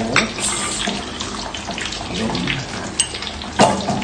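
Brewed coffee poured from a mug into a bowl, the liquid splashing, with a couple of sharp spoon clinks near the end.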